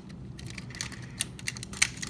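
Hard plastic toy parts clicking as a small Transformers figure is pushed into the chest compartment of a larger one: a handful of separate sharp clicks, the loudest near the end.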